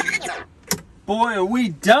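A DJ mix played on a DJ controller stops abruptly about half a second in. A single sharp click follows.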